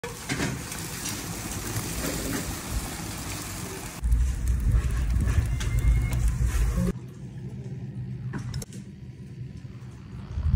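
Wood fire burning in a stone hearth, crackling and hissing, then a louder stretch of burning with a deep low rumble for about three seconds that cuts off abruptly. The last few seconds are quieter, with a few light clicks.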